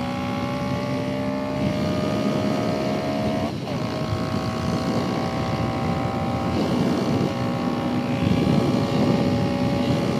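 Kawasaki Z125's single-cylinder engine pulling under load, its pitch climbing steadily. About three and a half seconds in, a quick gear change: the pitch jumps briefly, drops lower, then climbs again. Wind noise on the microphone runs underneath.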